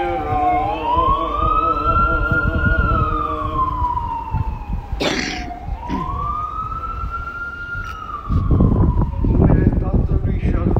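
Emergency vehicle siren wailing, its pitch rising and falling slowly in two long sweeps of about five seconds each, over a low rumble. There is a sharp click about halfway through.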